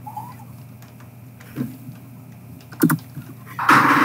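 Typing on a computer keyboard, with a few scattered key clicks over a steady low hum, and a louder, short rushing noise near the end.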